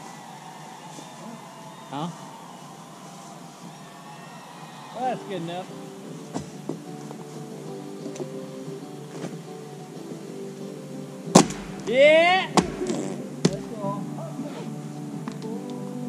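Music at low level from a portable music player at camp, with held notes. A single sharp knock comes about eleven seconds in, and brief rising swooping sounds come twice, about five and twelve seconds in.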